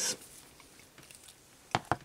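Two quick, sharp knocks close together near the end, as a metal mandrel with a brass compression fitting is set down on a cutting mat; quiet handling before that.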